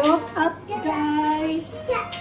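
A high voice sings a short wordless tune: a few swooping notes, then one held note.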